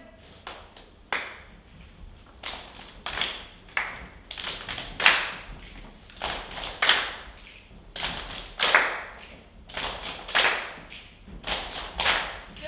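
A stage ensemble beating out body percussion together: sharp percussive hits in a steady rhythm, about three every two seconds, each ringing on in the hall's echo. The hits start soft and grow louder a few seconds in.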